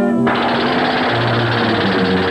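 Cartoon jackhammer sound effect, a rapid rattle that cuts in about a quarter second in, over orchestral theme music.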